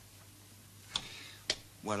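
Two short, sharp clicks about half a second apart during a quiet pause, then a man starts to speak.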